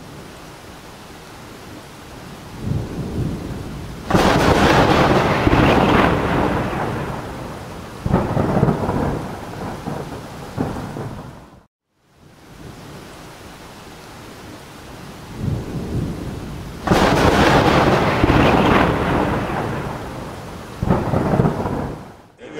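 Thunderstorm sound effect: rain with thunder rumbling up in long swells. The recording cuts to silence about halfway through and then plays again from the start.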